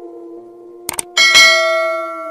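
Subscribe-animation sound effect: a quick double click just before the one-second mark, then a bright bell ding that rings on, over the fading ring of an earlier chime.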